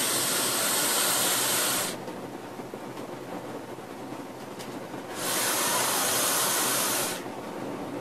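Vaping on a Fishbone dripping atomizer: two long airy hisses of about two seconds each, one at the start and one about five seconds in. They come from drawing air through the dripper's wide air holes and blowing out a big vapour cloud.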